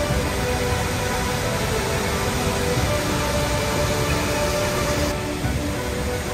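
Background music with soft, held tones over the steady rushing of the Hukou Waterfall, the Yellow River's muddy torrent pouring into a narrow rock gorge.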